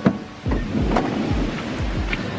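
A vehicle door shuts with a single sharp thud right at the start, followed by a steady hiss of rain.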